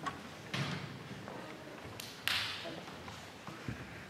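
Footsteps and light knocks on a wooden stage floor as a metal music stand is set up, with a sharp knock about two seconds in followed by a brief rustle, and a low thud near the end.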